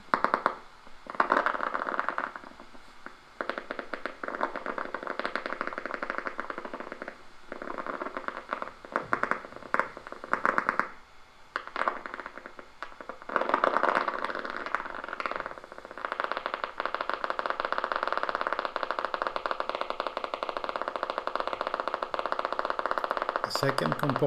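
EMG machine's audio monitor playing the signal from a concentric needle electrode in a voluntarily contracting muscle: rapid trains of crackling clicks from motor unit potentials, broken by short gaps while the needle is repositioned. From about 16 seconds in, it settles into a steady, fast, even firing as a stable potential is held.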